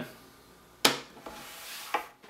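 A metal magnet pen being laid down on a wooden tabletop: a sharp click a little under a second in, a soft rubbing of hands on wood, and a second, lighter click near the end.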